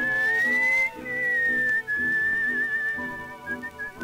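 Whistled refrain over a 1932 dance-orchestra recording: a high whistled melody drawn out in long notes that glide gently up and then slightly down, with a short break about a second in and a few quick notes near the end. Underneath, the band keeps a steady chordal beat of about two chords a second.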